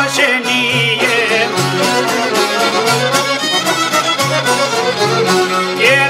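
Albanian folk ensemble playing an instrumental passage: a plucked çifteli and a round-bodied lute over a frame drum beat, with a high, ornamented melody line.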